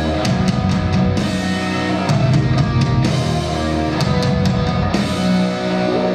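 Rock band playing live: electric guitar chords over a drum kit, with frequent drum and cymbal hits.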